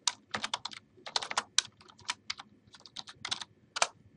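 Computer keyboard typing: a quick, uneven run of keystroke clicks in short bursts as a short phrase is typed.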